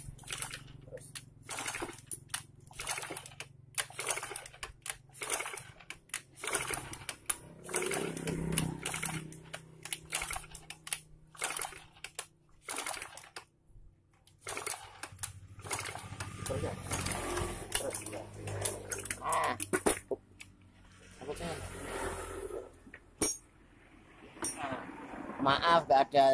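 Honda Beat FI scooter engine with its valve cover off, turned over again and again by the kick-start lever without firing. The cranking gives a run of sharp mechanical clicks and clacks, a few a second with short pauses. It is being cranked to pump oil up to the cylinder head and prove the oil feed is working.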